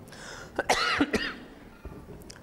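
A man coughs twice in quick succession, about a second in.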